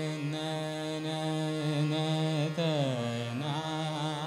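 Male Hindustani classical khayal vocal in Raag Chhaya Nat: long held notes with a slow downward glide (meend) a little past halfway. Harmonium and a tanpura drone accompany the voice.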